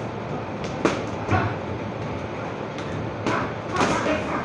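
Punches landing on hanging heavy punching bags: a few sharp smacks, two about a second in and two more near the end, over steady background noise.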